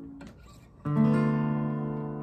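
Steel-string acoustic guitar: a chord dies away, there is a short gap with faint string and finger noise, then a single strummed chord about a second in is left to ring and slowly fade, closing the song.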